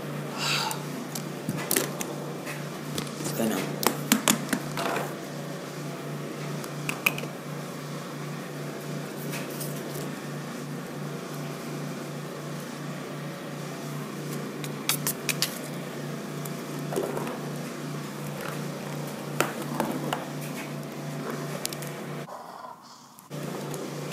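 Plastic toy figures being handled and knocked against a wooden floor and stair rail: scattered clicks and clatters over a steady low hum. The sound briefly drops out near the end.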